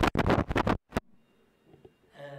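Handling noise on a handheld microphone: a rapid run of loud scratches and rubs that stops about a second in.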